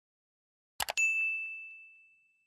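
A mouse double-click sound effect, followed at once by a single bright bell ding that rings out and fades over about a second. This is the notification-bell sound of a subscribe-button animation.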